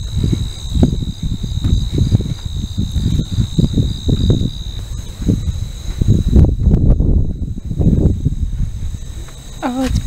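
Field insects trilling in steady high tones, one of them stopping about halfway, over loud, gusty low rumbling from wind on the microphone and footsteps through tall grass.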